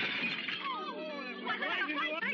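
Window glass shattering as a thrown brick smashes through it: a sudden crash that dies away over the first half second, followed by voices from the film's soundtrack.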